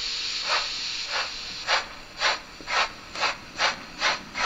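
Sound decoder of a Märklin H0 model of the Bavarian S 3/6 express steam locomotive playing steam exhaust chuffs over a steady hiss. The chuffs come about two a second and quicken slightly.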